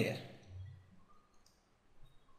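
Faint clicks from the computer mouse used to hand-write a note on the screen, after the tail end of a spoken word.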